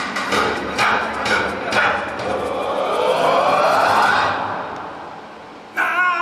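Show soundtrack played over outdoor loudspeakers: percussive hits about twice a second, then a long rising whoosh effect that fades away. Near the end, sustained pitched music cuts in suddenly.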